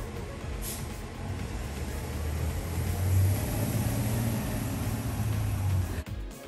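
Engine of a large road vehicle rumbling low, growing louder from about two seconds in and loudest around three seconds as it drives off.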